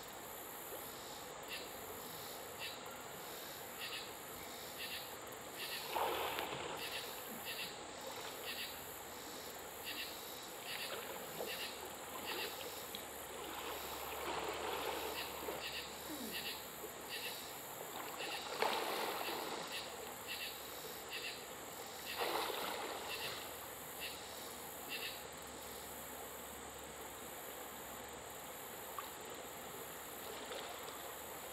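Steady high drone of insects with a short chirp repeating roughly every half second to second, over the water. Four bursts of a person splashing while swimming in the creek, the loudest about eighteen seconds in.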